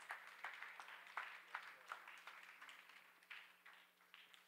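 Faint, scattered hand clapping from a congregation, a few irregular claps a second, thinning out toward the end.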